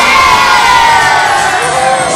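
A crowd of children cheering and shouting loudly over party music.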